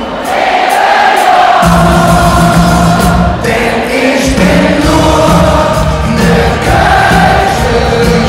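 A live band playing a carnival song in a large arena, with many voices singing along. The bass drops out briefly at the start and again about halfway through.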